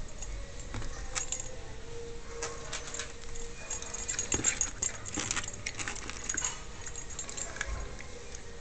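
Yorkshire terrier moving about on a tile floor: a scattered run of light clicks and metallic jingling, like its collar tag, busiest through the middle few seconds.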